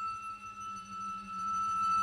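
Chamber ensemble holding a single high, pure note steady and quiet, with a lower note swelling back in about halfway through.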